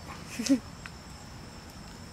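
A short laugh about half a second in, then only low, steady outdoor background.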